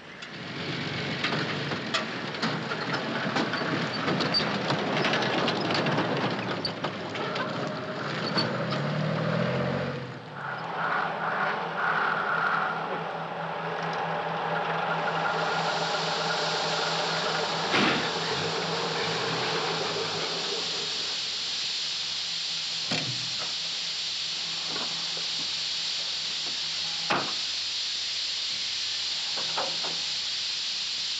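Lorry running, then about halfway through a steady hiss of steam from the overheating engine sets in and carries on, with a few sharp knocks.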